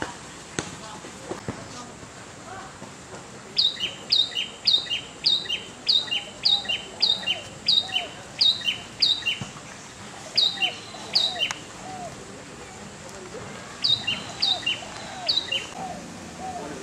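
A bird chirping over and over, about two short chirps a second, each a high note that drops in pitch; it pauses for a couple of seconds and starts again near the end.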